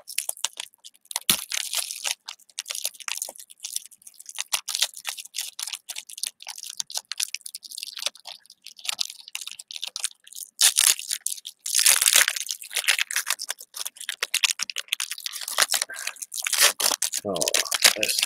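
Foil wrapper of a trading-card pack crinkling and tearing as it is peeled open by hand, with louder crackling bursts about two-thirds of the way through and again near the end.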